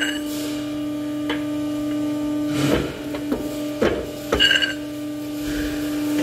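A steady machine hum, with several metallic clanks that ring as a steel bar knocks against a steel machine bed and bending die, in the second half.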